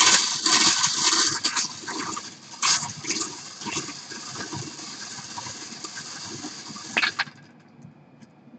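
Hand-cranked wire bingo cage being spun, its balls rattling and tumbling against the wire, to draw a number. The rattle is loudest in the first few seconds, then steadier, and stops with a last clatter about seven seconds in.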